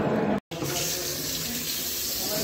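Water running steadily from a washbasin tap into the sink. It starts abruptly about half a second in.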